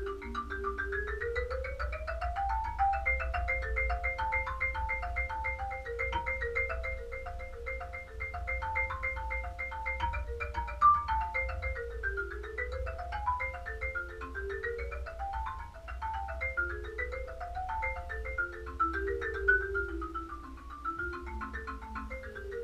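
Solo wooden-bar mallet keyboard played with two mallets: a fast technical étude of rapid, even strokes, with a repeated high note over a moving lower line and several quick rising and falling runs.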